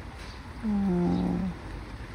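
A woman's drawn-out hesitation sound, a low "uhh" held for just under a second about halfway through, in a pause in the middle of a sentence.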